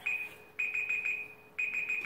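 Electronic timer alarm beeping: a single high-pitched beep repeated rapidly in groups with short gaps between them, signalling that the time for a turn has run out.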